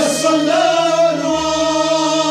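Sufi devotional kalam sung by voices together over a steady low drone; a new phrase begins right at the start, held and gently wavering.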